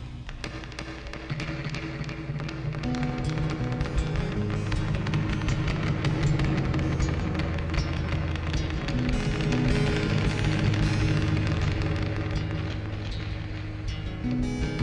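Rapid fingertip tapping on the Empty Glass Drum Mod pedal's metal enclosure, picked up by its built-in piezo contact mic and turned into harsh, distorted clicks. Acoustic guitar chords ring underneath, and the whole mix swells over the first few seconds.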